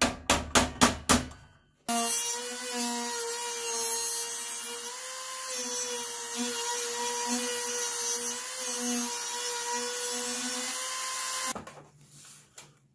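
A quick run of sharp taps on the toy piano's metal side panel, about five a second, for the first two seconds. Then a handheld rotary tool with a cutoff wheel runs at a steady high whine while it grinds into the painted sheet-metal panel, throwing sparks. It stops shortly before the end.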